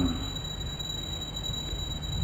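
A pause in speech filled only by the recording's steady background hiss and low hum, with a faint steady high-pitched whine.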